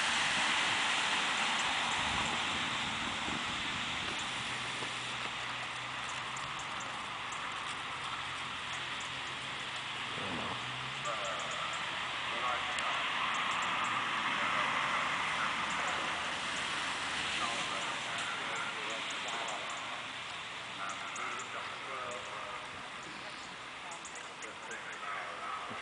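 Open-air background noise, a steady hiss, with faint voices talking at a distance now and then.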